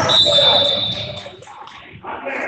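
A referee's whistle blown once, a steady high note lasting about a second, over voices in the gym.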